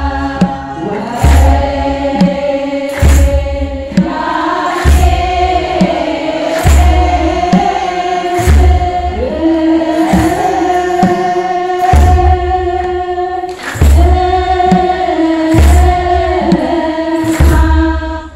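Ethiopian Orthodox church choir singing a hymn together in long held notes, over a slow, steady drum beat about every two seconds.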